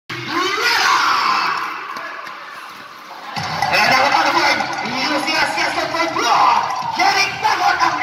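Basketball spectators shouting and cheering, many voices at once. The noise dips and then comes back suddenly, louder, about three and a half seconds in.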